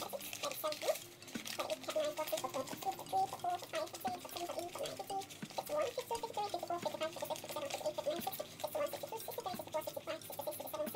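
A wad of naira banknotes being counted by hand, note after note flicked and peeled off the stack in a steady run of crisp paper rustles and small crackles.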